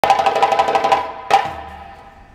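Djembe hand drums played in a fast roll of strokes for about a second, then a single ringing stroke that dies away.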